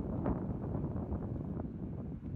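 Wind buffeting the microphone: an uneven low rumbling noise with no distinct events.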